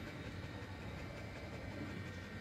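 Steady low background rumble with a faint, even high hum, with no distinct events.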